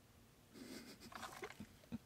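Near silence, with faint rustling and a few soft clicks from a small LED video light being handled and adjusted.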